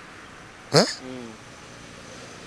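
A man's single short, rising "huh?" about two-thirds of a second in, trailing off into a brief lower murmur; otherwise only quiet background.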